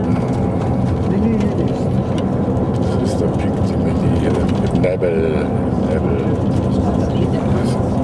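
Engine and road noise inside a moving vehicle: a steady low drone, with brief murmured words about five seconds in.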